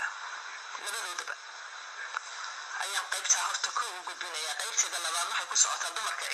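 Speech played back through a Samsung smartphone's small speaker, thin and tinny with no low end. There is a short phrase about a second in, a pause, and then steady talk from about three seconds in.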